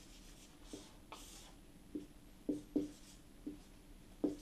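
Marker drawing on a whiteboard: a run of about six short, faint taps and strokes as the pen touches down and draws lines, with a brief squeak about a second in.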